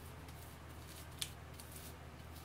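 Faint sticky squishing and small clicks of a gloved hand working bentonite clay paste into hair, with one sharper click about a second in, over a steady low hum.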